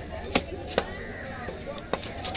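A heavy cleaver-like knife chopping through a cobia onto a wooden block: three sharp blows, the first two about half a second apart and the third near the end.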